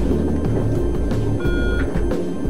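Background music with a regular drumbeat, and a short high electronic beep about a second and a half in.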